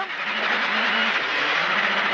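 Rally car driven flat out along a straight dirt stage, heard from inside the cockpit: the engine running at a steady high note under load, over a constant rush of tyre and gravel noise.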